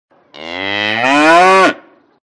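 A cow mooing: one long moo that rises in pitch and gets louder toward the end, then stops abruptly.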